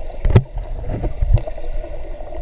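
Swimmer's strokes heard underwater: water churning and bubbling with irregular muffled thumps, the loudest about a third of a second in and another just past a second.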